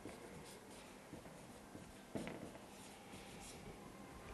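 Marker pen writing on flip chart paper: faint, scratchy squeaks of short pen strokes, with a sharper tap about two seconds in.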